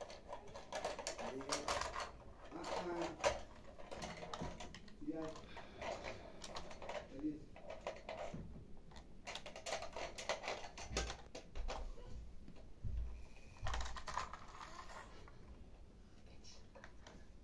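Plastic toy cars and toy parts clicking and clattering as a small child handles them, an irregular series of light clicks, with the child's short murmurs in between.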